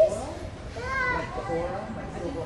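Young voices calling out across a large indoor soccer hall, with one drawn-out call rising and falling about a second in.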